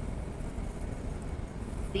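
Steady low rumble of background room noise with no distinct event; a woman's narrating voice begins right at the end.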